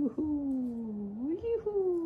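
A voice making one long drawn-out sound that slides slowly down, swoops up about halfway through and slides down again.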